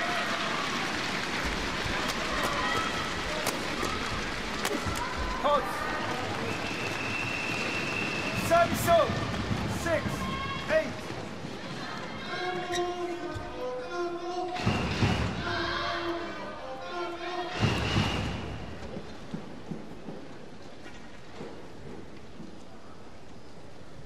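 Badminton doubles rally: sharp racket hits on the shuttlecock and shoe squeaks on the court over steady crowd noise for about the first half. After the point ends, the crowd cheers and calls out, with two loud swells of cheering and clapping.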